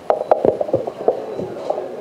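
A few scattered hand claps, most of them in the first half-second, over a low background of chatter.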